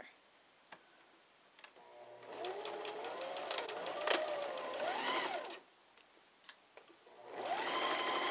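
Electric home sewing machine stitching a straight staystitch along a coat seam, in two runs. It starts about two seconds in, runs for about three and a half seconds with its motor whine rising and falling in pitch as the speed changes, stops, then starts again near the end.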